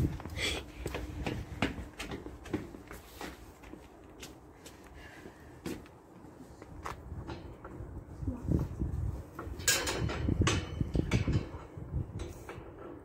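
Footsteps on a paved passage and the metal latch of a wooden garden gate being worked: a string of clicks and knocks, with a louder burst of rattling near the end.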